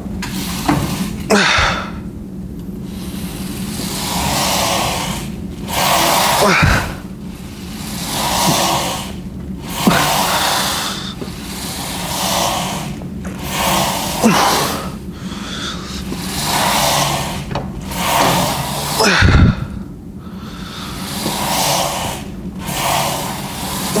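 A man breathing hard and rhythmically while pressing a Smith machine bar, with a forceful breath about every two seconds. A few dull thumps fall in between, the loudest late on.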